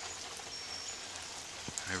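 Light breeze outdoors: a steady, even hiss with a single faint click near the end.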